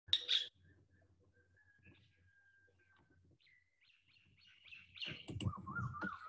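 Faint bird chirps: a short, louder chirp at the very start, then a run of quick chirps that grows louder in the second half.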